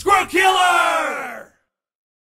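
A voice yelling: a short shout, then one long cry that falls steadily in pitch and cuts off about a second and a half in.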